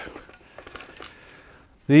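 Faint clicks and light metallic clinks of a tripod's legs and fittings being handled as the legs are spread out.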